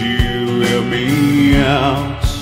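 Folk-rock band music: guitar and a drum beat under a drawn-out melody note that bends and wavers with vibrato near the end.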